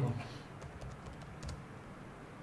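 A few light clicks of computer keyboard keys being typed.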